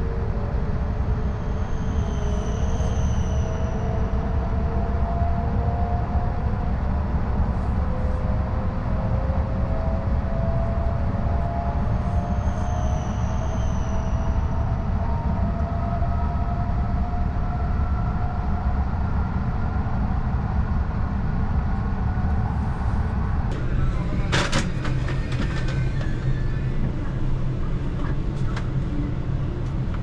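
Inside a Tohoku Shinkansen car pulling away and gathering speed: a steady low running rumble, with the traction motors' whine slowly rising in pitch. About three-quarters of the way through the sound changes, with a sharp knock and a few clicks.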